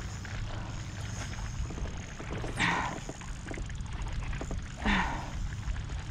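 Steady wind rumble on the microphone over choppy water, with two heavy breathy exhalations, one about halfway through and one near the end, from an angler worn out by a long fight with a big bass.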